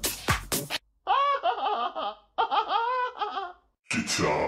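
House music cuts out about a second in and a thin, filtered sample of a person laughing plays in two bursts, with no beat under it. The music kicks back in right at the end.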